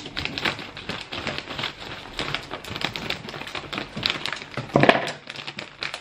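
Dry brown rice pouring from its plastic bag into a plastic storage container: a dense, steady patter of grains. A brief louder sound about five seconds in.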